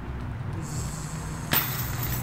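Steady low outdoor rumble with a faint high hiss, broken by one sharp click about one and a half seconds in.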